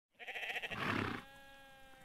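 A single sheep bleat: a wavering baa about a second long, trailing off into a faint fading tail.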